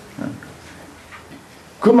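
A pause in a man's spoken lecture: low room tone with a brief, faint voice sound just after the start, and his speech resuming near the end.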